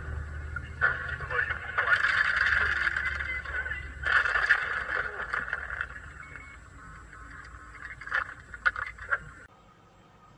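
Car crash recorded from inside the car by its dashcam: low road rumble under several sudden crashes of impact, with two long loud noisy stretches of grinding and voices between them. The last sharp knocks come near the end, then the sound drops away abruptly.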